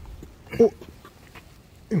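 Mostly speech: a man's short questioning "eh?", with a few faint clicks from a hand working the exterior rear door handle of a Volkswagen Phaeton.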